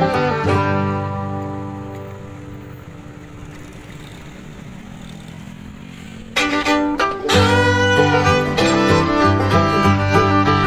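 Instrumental background music. It fades down over a few seconds, then comes back loud about six and a half seconds in.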